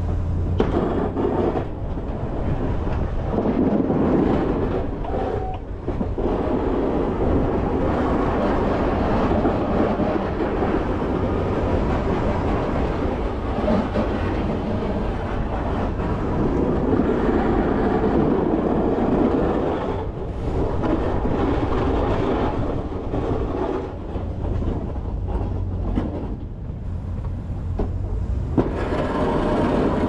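Boss DXT V-plow blade scraping snow across pavement, pushed by a Chevy 3500HD pickup whose engine runs underneath as a steady low rumble. The rough scraping swells in long stretches and eases between them as the truck pushes and backs off.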